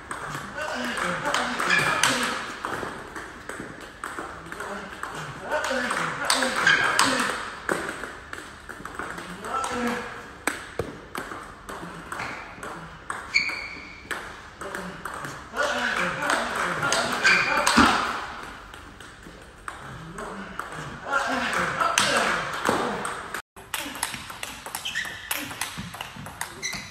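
Table tennis balls being hit in quick succession during a multiball drill: a rapid, irregular run of sharp clicks as balls are struck by bats and bounce on the table. A person's voice is heard at times.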